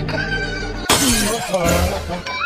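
Background music with a sudden glass-shattering sound effect about a second in, fading away over most of a second.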